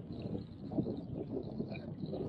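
Wind buffeting the microphone over water lapping at the kayak, a fairly even low rumble.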